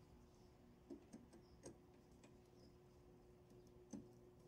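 Near silence with a faint steady hum and a few small, faint clicks: wire and screwdriver handling at a mini-split's electrical terminal block. There are two clicks about a second in, another shortly after, and one just before the end.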